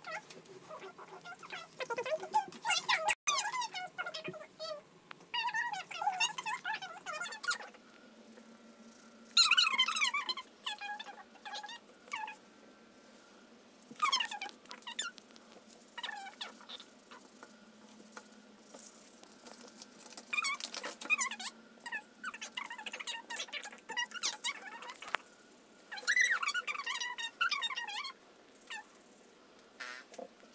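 Colouring pens squeaking on paper in short bursts of quick strokes, a second or two at a time, with pauses between the bursts.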